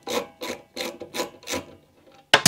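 Ratcheting socket screwdriver clicking and rasping in even strokes, about three a second, as it undoes a 10 mm bolt.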